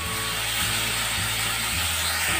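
Onions and ginger-garlic paste frying in mustard oil in a nonstick kadai, a steady sizzle, while a silicone spatula stirs and scrapes them around the pan.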